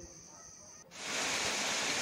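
Faint forest background with a steady high hum and a few faint calls, cut off abruptly about a second in by the loud, steady rush of a small waterfall falling into a pool.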